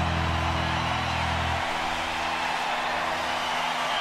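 The last low note of a live acoustic song rings and stops about a second and a half in, leaving a steady, even wash of noise from the audience applauding.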